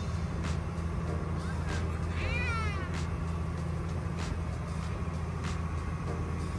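Boat engine drone, steady and low, with water rushing past the hull of a moving speedboat, and light knocks about every second and a bit. A short high wavering cry cuts through about two seconds in.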